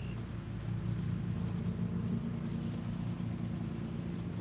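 An engine running steadily, a low drone with a few even tones that holds without change.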